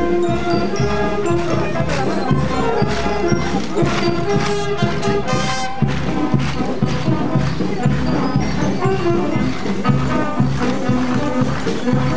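A banda de pueblo, a brass-and-drum town band, playing festive procession music: sustained brass notes over steady percussion.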